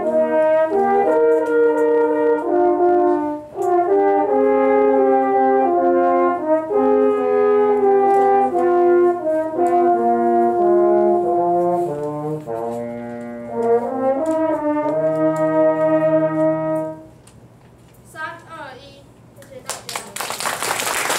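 A section of French horns playing a slow piece together in harmony: chords of long held notes moving every second or two. The last chord stops about three seconds before the end, and a brief gliding sound follows.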